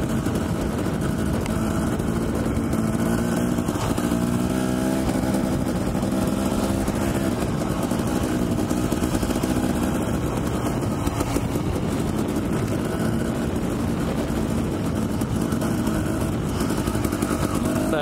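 Dirt bike engine running at low, steady revs, ridden slowly and gently on a flat front tire, its pitch rising for a few seconds about four seconds in as the throttle is opened a little.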